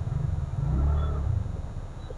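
Low rumble of a vehicle engine close by, swelling about a second in and then fading.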